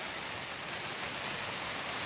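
Steady rain falling on an enclosed car trailer, heard from inside it as an even hiss.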